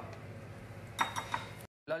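A few short, light clicks and clinks of plastic kitchenware about a second in, from a measuring scoop and shaker bottle being handled on the counter, after faint room noise; the sound cuts out abruptly near the end.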